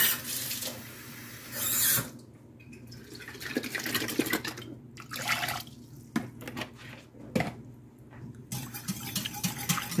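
Water being added to a thin barbecue sauce: short runs of splashing water, then the watery sauce poured and shaken out of a plastic sauce bottle into a steel saucepan. A wire whisk ticks against the pan near the end.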